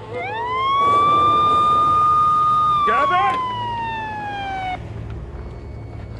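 Siren winding up to a steady high wail, holding it for about two seconds, then sliding slowly down in pitch and cutting off near the five-second mark. A brief wavering voice is heard over it about three seconds in.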